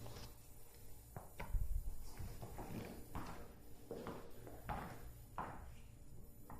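Footsteps of a person in work boots walking across the floor toward the microphone, a step about every two-thirds of a second, with the heaviest thump about a second and a half in.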